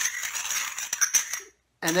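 Two cut glass bottlenecks, one slid inside the other, rubbed together by hand: a gritty glass-on-glass scraping with small clinks as the cut rims smooth each other. It stops abruptly about a second and a half in.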